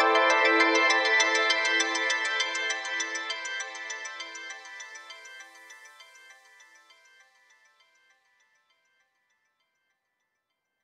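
Downtempo psychill electronic music fading out at the end of the track: a fast, evenly repeating synthesizer figure over a held tone, dying away to silence about eight seconds in.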